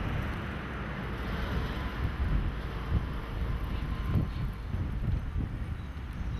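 Road traffic on a multi-lane street, vehicles passing with a steady tyre and engine rumble, under wind buffeting the microphone.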